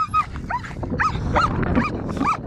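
A German shepherd whining in about five short, high-pitched cries that rise and fall, eager to go at a cow while being held back.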